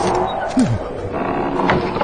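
A man's voice groaning without words, with one falling groan about half a second in.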